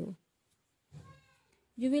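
A faint, brief high-pitched call about a second in, higher than the narrating woman's voice, between her spoken phrases.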